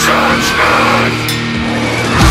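Beatdown hardcore/death metal music: distorted guitars holding low chords, with a few sharp cymbal hits.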